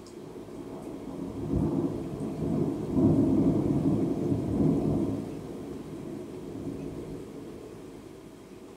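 Thunder rumbling: a low roll that builds about a second in, is loudest through the middle, and dies away over the last few seconds, over steady rain.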